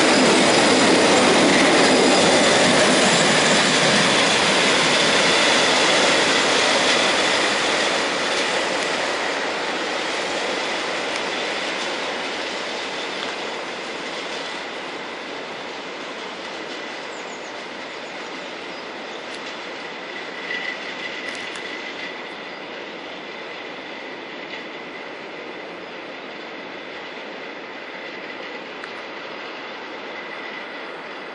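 Tank wagons of a long freight train rolling by on the rails, loud for the first several seconds and then fading steadily as the end of the train draws away. A thin, high wheel squeal lingers under the fading rumble.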